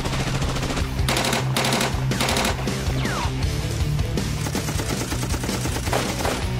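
Repeated bursts of rapid automatic gunfire, beginning about a second in, over a low, steady music drone.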